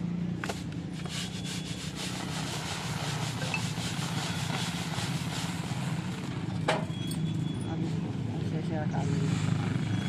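Pearl millet grain being winnowed: poured from a raised metal tray onto a heap, with a dry hiss of falling grain. A steady low hum runs underneath, and a sharp knock comes about two-thirds of the way through.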